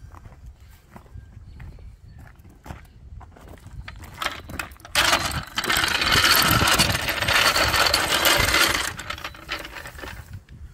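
A metal motorcycle lift jack dragged on its wheels across a gravel driveway. About five seconds in, a loud rattling crunch starts and runs for about four seconds, after a few scattered footsteps on gravel.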